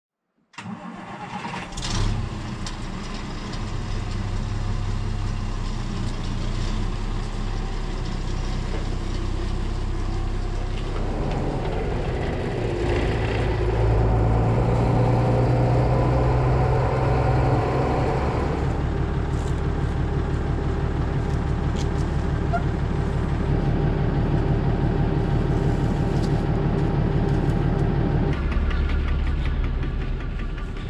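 Case IH 1455 tractor's six-cylinder diesel starting about half a second in, then running steadily. It goes up in revs and loudness about halfway through, settling into a low, even pulsing afterwards.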